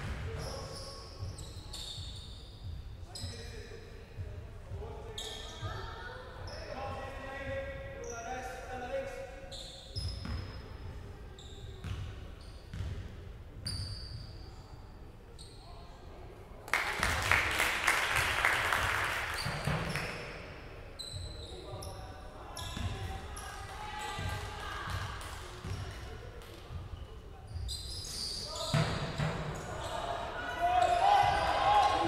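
Basketball game on a wooden indoor court: the ball bouncing on the floor, short squeaks of sneakers, and players calling out, in a hall with echo. About 17 seconds in, a loud burst of cheering and clapping lasts about three seconds.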